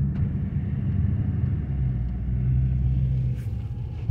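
Car engine running with a steady low rumble.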